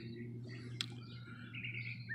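Faint birds chirping in short, thin calls, more of them in the second half, with a single sharp click a little under a second in.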